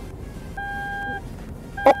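Seat belt reminder chime of a 2018 Toyota Rush beeping inside the moving car's cabin, warning that a passenger's seat belt is unbuckled. It is a steady single-pitched beep a little over half a second long, repeating about every 1.2 seconds, over low road noise.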